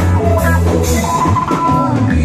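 A dance band playing upbeat music, with a steady drum beat over a strong bass line and a melody on top.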